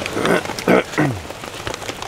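Steady rain pattering on the camp, with a few short vocal sounds from a man in the first second.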